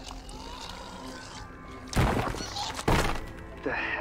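A low, steady music underscore broken by two heavy thunks a little under a second apart, about halfway through.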